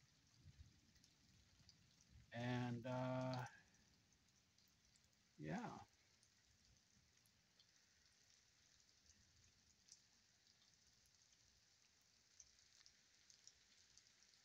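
Near silence with a faint hiss of rain. About two seconds in, a short two-part hum on one steady low pitch, in a man's voice, and a few seconds later a brief cry that falls in pitch.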